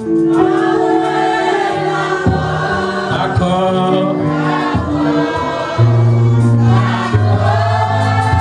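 Gospel music: a choir of voices singing with long held notes over band accompaniment, including electric guitar and sustained bass notes.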